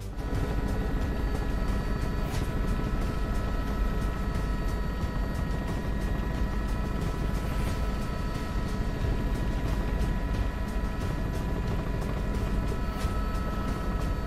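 Helicopter running steadily, heard from on board: a constant low rotor rumble under a steady turbine whine.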